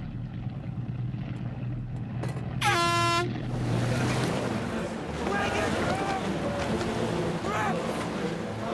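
A single short, steady-pitched air-horn blast sounds about three seconds in, the start signal of a rowing race just after the starter's call. Shouting voices follow over a steady low hum.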